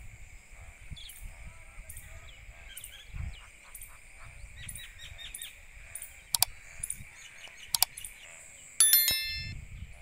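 Subscribe-button sound effect laid over outdoor ambience: two sharp clicks about a second and a half apart, then a bell ding near the end that rings out briefly. Underneath, a steady insect drone runs on with birds chirping and soft low thumps.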